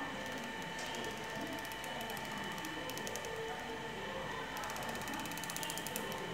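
Small motor mechanism running, making two spells of rapid fine ticking over a steady high whine.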